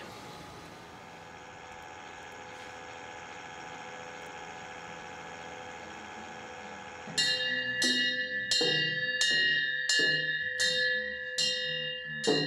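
A steady electrical hum with faint fixed tones from an MRI suite. About seven seconds in, a Siemens Magnetom Allegra head-only MRI scanner starts a scan: a loud, very regular series of ringing knocks, about two a second, each with the same pitched tones.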